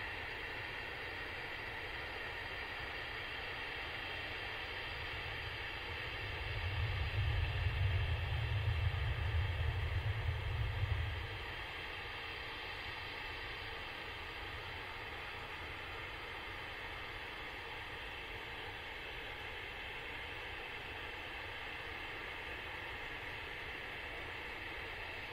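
Steady distant airfield ambience: an even hiss with faint high steady tones. About six seconds in, a low rumble swells for about five seconds, then fades back into the hiss.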